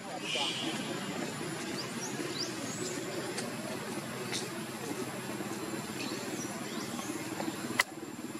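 A steady low murmur of indistinct voices, with a few short high chirps and a couple of sharp clicks.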